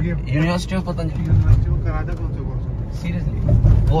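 Car driving on a highway, heard from inside the cabin: a steady low road-and-engine rumble that swells briefly about one and a half seconds in and again near the end, with voices talking over it.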